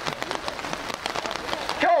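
Steady rain, with many small drop impacts ticking on the umbrellas held over the microphone.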